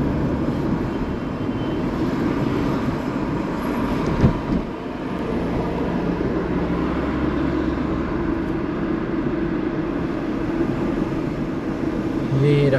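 A car driving in town, heard from inside the cabin: steady low engine and road noise, with a single thump about four seconds in.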